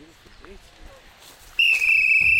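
Referee's whistle blown in one long, loud, steady blast starting about one and a half seconds in, after faint background. It signals a foul being called.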